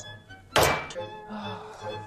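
A single sharp thunk about half a second in, with a short ringing tail, over background music.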